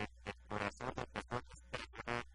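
A man's voice talking in short phrases, over a steady low hum.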